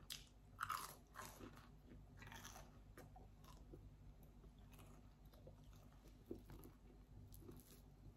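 Faint mouth sounds of chewing a bite of a baked mozzarella stick with its crisp breaded coating: a few soft crunches in the first two or three seconds, then quieter chewing.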